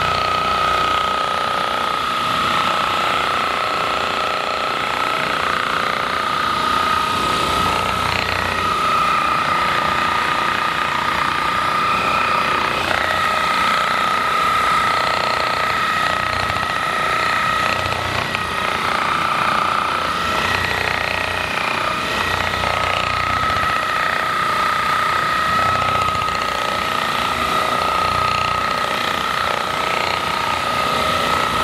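Percussive massage gun running against a patient's back, a steady motor whine that wavers slightly in pitch as it is worked over the muscles.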